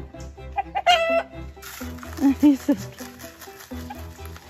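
Chickens clucking as a mixed flock of hens and roosters crowds around feed. There is a sharper, higher call about a second in and a few short clucks a little past the middle.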